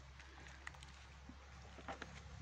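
Near silence: faint background hiss with a couple of faint ticks.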